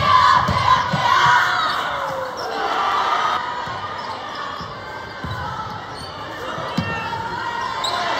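Basketball dribbled on a gym's hardwood floor, a few scattered thumps, over the noise of a crowd in the bleachers. The crowd is loudest in the first second or so.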